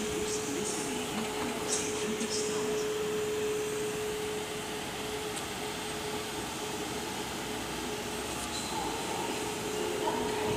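Electric train at a station platform giving off a steady hum with one held mid-pitched tone over a rushing background noise; the tone is strongest in the first four or five seconds and then grows fainter.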